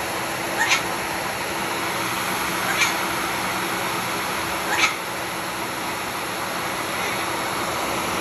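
A white cockatoo giving three short, high calls about two seconds apart, over a steady background hiss and hum.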